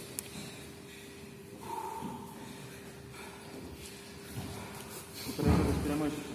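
Quiet sports-hall room tone with a faint steady hum and scattered faint noises, then a louder dull thud near the end.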